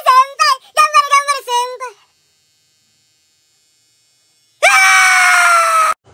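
A man's rapid, high-pitched laughter for about two seconds, then silence. A loud, sustained high scream starts near the end, sliding slightly down in pitch and cut off abruptly.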